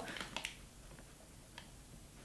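A few faint small clicks, about three spread over two seconds, from a plastic pump soap dispenser being handled and lifted to the nose.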